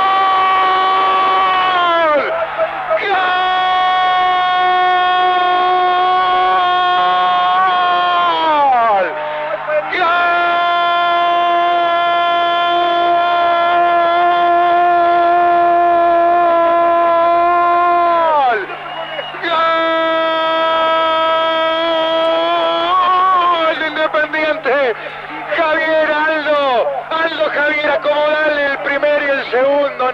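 Football commentator's drawn-out goal cry, a man shouting 'gol' for the winning penalty in four long held notes, the longest about eight seconds, each sliding down in pitch at its end. It breaks into rapid excited shouting over the last several seconds.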